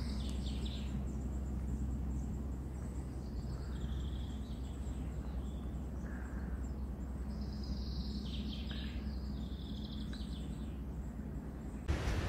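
Outdoor garden ambience: a steady low rumble with faint birdsong, a few short runs of high chirping coming and going.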